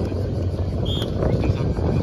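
Wind buffeting the microphone, a loud uneven low rumble.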